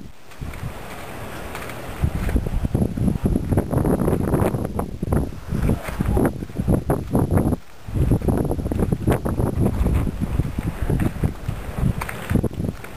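Wind buffeting the camcorder's microphone in low, rumbling gusts. It is lighter at first, picks up about two seconds in, and eases briefly near eight seconds.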